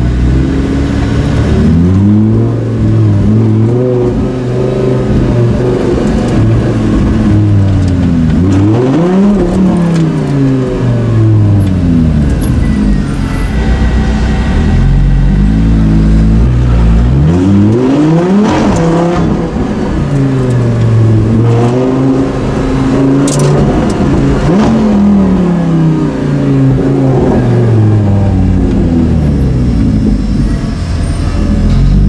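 Lamborghini Gallardo Super Trofeo race car's V10 engine heard from inside the cabin at low speed. The revs rise and fall repeatedly, with two quick sharp rev peaks about nine and eighteen seconds in.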